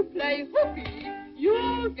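A voice singing a line of a song over instrumental music, with notes that swoop up and then hold.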